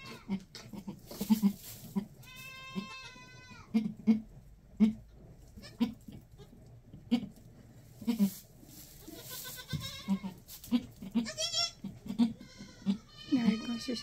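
A doe goat talking to her newborn twin kids in a run of short, low grunts, with a few longer, higher-pitched bleats.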